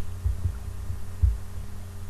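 A steady low electrical hum on the microphone, with a few dull low thumps near the start and again a little past one second.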